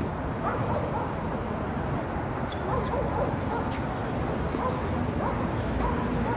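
Tennis racket strokes during a baseline rally, a few sharp pops of the ball, over a dog yipping and barking repeatedly in short calls.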